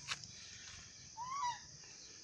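A bird gives a single short call, one note that rises and then falls, a little past a second in, over a faint steady high hiss.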